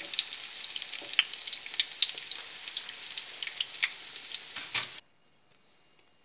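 Cauliflower patties frying in hot oil in a pan: a steady sizzle with frequent sharp crackles and pops, which cuts off suddenly about five seconds in.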